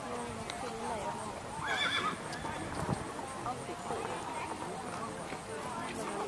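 A horse whinnying once, briefly, about two seconds in, over people talking quietly.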